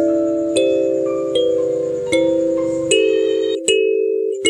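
Kalimba music: plucked metal tines ringing on, with a new note or chord about every three-quarters of a second.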